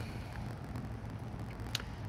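Quiet, steady low background rumble in a pause between words, with one short click near the end.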